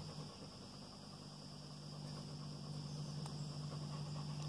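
Faint, steady high-pitched chorus of crickets in woodland, with a low steady hum beneath it.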